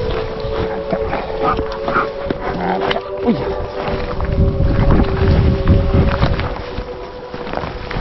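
A dog vocalizing in short bursts while tugging at a wooden stick in play, over background music with long held notes.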